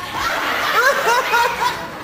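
A man chuckling in a run of short rising laughs, over a wash of audience laughter in a hall.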